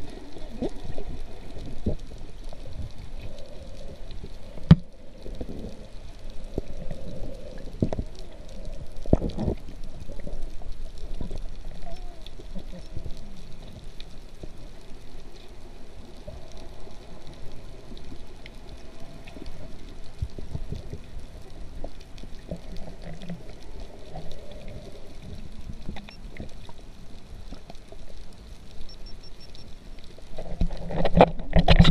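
Muffled underwater water noise heard through a camera housing: low, uneven gurgling and rumbling of moving water and bubbles. A single sharp knock sounds about five seconds in.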